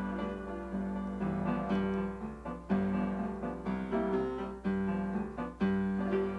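Upright piano played with both hands: chords in the bass with a melody above, each new note struck and then ringing away.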